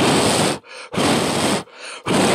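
Two hard puffs of breath blown at a small plastic toy fan to test whether it spins. Each puff lasts about half a second, with a short gap between them.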